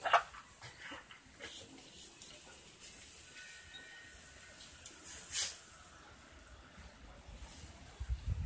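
A dog nosing in plants and debris at ground level, making a few short, scattered snuffling and rustling sounds. The loudest comes right at the start and another about five and a half seconds in.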